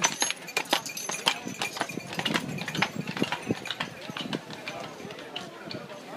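Shod hooves of a team of draft horses clip-clopping on a paved road as they pull a wagon past, the strikes quick and irregular and thinning out near the end, with people's voices over them.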